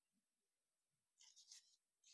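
Faint rustle of a folded sheet of gold-foil paper being handled and turned by hand, a short crinkle lasting about half a second a little past a second in; otherwise near silence.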